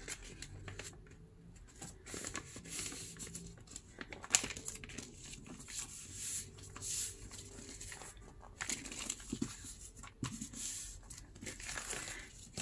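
Newspaper being folded and creased by hand, rustling and crinkling in irregular bursts as it is pressed flat, with one sharp tap about four seconds in.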